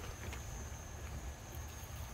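Quiet background: a low rumble with a thin, steady high-pitched tone running through it. Nothing sudden stands out.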